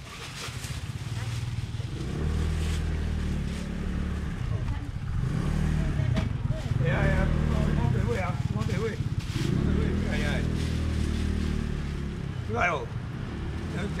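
A motor vehicle engine running at low revs, a low steady hum heard in two stretches of a few seconds each, with brief talk between them and again near the end.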